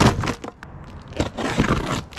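Handling noise from a plastic storage tote and its packaged contents: a sharp knock as it begins, then, a little past the middle, a busy run of scraping, rustling and clicking as the tote and its contents are shifted.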